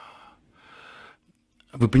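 A man's audible breath into a close studio microphone, a soft rush of air about half a second long. A moment of silence follows before he starts speaking near the end.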